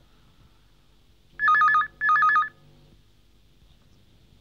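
Electronic telephone ringer trilling twice, two short bursts about half a second long, each warbling rapidly between two pitches.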